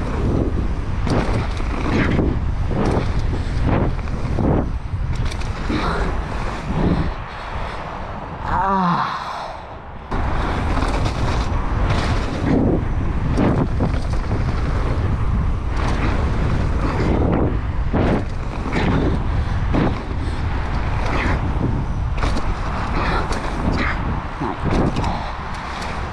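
Mountain bike riding down a dirt jump line, heard through an action camera: wind rushing over the microphone, tyres on dirt, and repeated rattles and knocks from the bike and its landings. The noise drops for a moment about nine seconds in.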